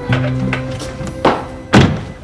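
A car door shut with a solid thunk near the end, the loudest sound, with a lighter knock just before it, over background music with held low tones.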